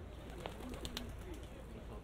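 A pigeon cooing low, with a few sharp clicks about half a second to a second in, over steady street ambience.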